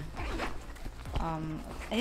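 The zipper of a velvet Kate Spade handbag being worked open by hand, with a short murmur of a woman's voice.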